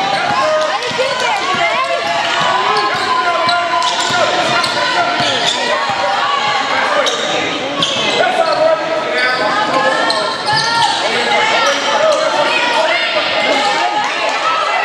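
Basketball dribbled on a hardwood gym floor, with sneakers squeaking and players and spectators calling out, echoing in the hall.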